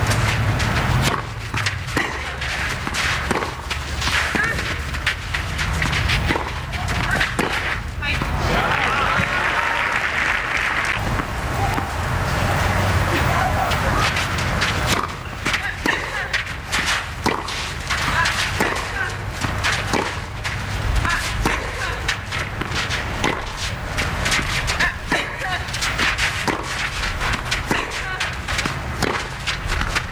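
Tennis ball struck back and forth with rackets in baseline rallies, a sharp pop every second or so, over steady crowd noise and voices.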